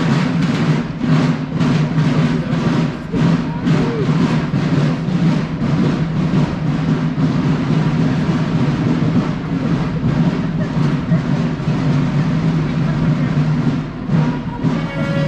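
Marching-band drums beating a steady marching cadence of about three beats a second, fading out about halfway through, over the chatter of a street crowd.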